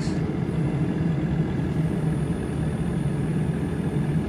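Diesel engine of a compact Merlo telehandler idling steadily.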